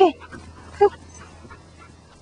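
Border collie giving one short, sharp bark about a second in.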